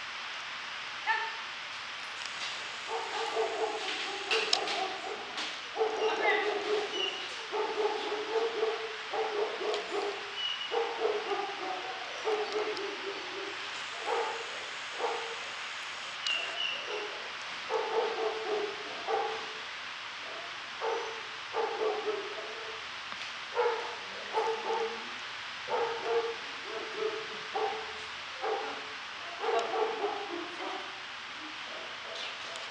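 A dog giving short calls over and over, roughly one a second, over steady room hiss.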